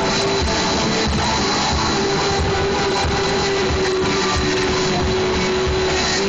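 Live rock band playing at full volume: drums keep a steady beat under a long held note.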